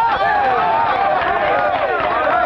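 A room full of men cheering and shouting all at once, many voices overlapping, with hand clapping.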